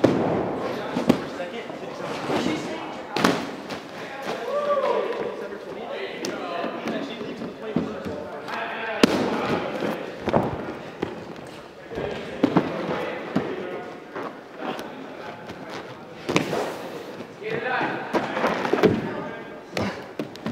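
Bare feet landing and stepping on padded gym mats and vinyl-covered foam vault boxes, giving repeated irregular thuds, with voices in the background.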